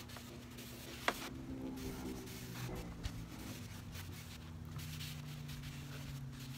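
Cotton rag wiping stain onto a wooden tabletop in repeated rubbing strokes. A sharp click about a second in, a smaller one about three seconds in, and a faint steady hum behind.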